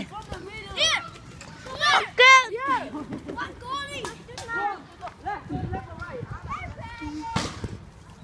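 Kids' voices shouting and calling out to each other during a soccer game, high-pitched and overlapping, with the loudest shout about two seconds in.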